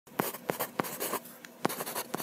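A pen scratching across paper in a series of short, quick strokes: a handwriting sound effect.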